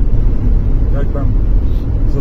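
Steady low road and engine rumble inside a car cabin cruising on a highway at about 105 km/h, with a brief spoken word about a second in.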